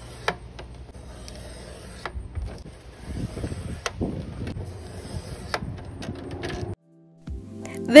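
Sliding paper trimmer cutting the edges off a sheet of printed paper: a few sharp clicks of the cutter head and the rasp of the blade running along the paper. The sound cuts off suddenly near the end, and background music comes in.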